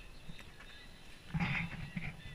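A person's footsteps, spaced about a second apart, with one heavier step about three quarters of the way in.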